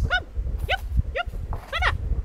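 A dog giving four short, high yelps, each rising then falling in pitch, over a low rumble.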